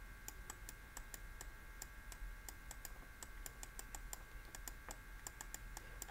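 Faint, irregular clicking, several taps a second, from writing strokes made with a stylus on a digital drawing tablet, over a steady low electrical hum.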